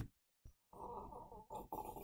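Faint slurping of a hot drink from a wide mug, starting about two-thirds of a second in, after a short click at the very start.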